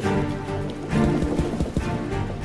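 Online slot game soundtrack music, with a quick run of clacks in the second half as the spinning reels stop.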